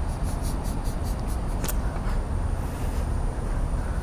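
Steady low rumble of background noise inside an air-supported sports dome. Faint rapid ticking runs through the first couple of seconds, and a single sharp click comes a little before the middle.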